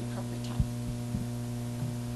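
Steady electrical mains hum, with a couple of soft low thumps about half a second and a second in.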